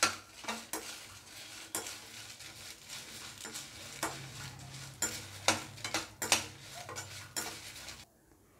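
A slotted ladle scrapes and clinks irregularly against a metal kadai as dried red chillies and garlic cloves are stirred and tossed while they roast. The strokes come at uneven intervals, some much sharper than others.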